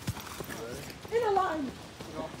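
A person's voice calling out a drawn-out, falling exclamation about a second in, with no clear words, over footsteps on a dirt trail.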